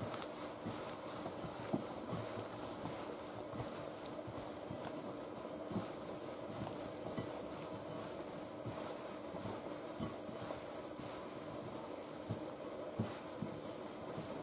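Faint, soft rustling and occasional light ticks of hands tossing squid pieces in flour in a glass bowl, over a steady low background hum.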